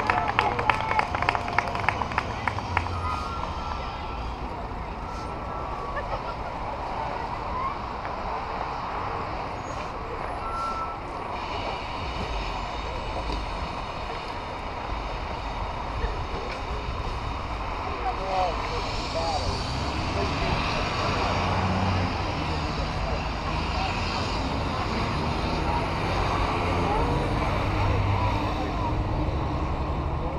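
Rapid, evenly spaced hand claps for the first two seconds or so, then steady open-air background noise with a low rumble and faint distant voices.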